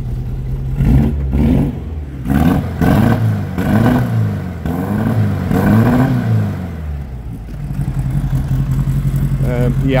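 The air-cooled flat-four engine of a VW T2 Bay camper is revved up and down several times, then settles back to a steady idle about seven and a half seconds in.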